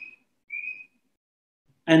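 Two short, high whistling tones about half a second apart, each rising slightly in pitch.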